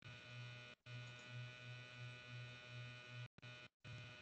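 Faint electrical buzz on the video-call audio: a low hum that pulses a few times a second under a thin steady whine, dropping out to silence for an instant a few times.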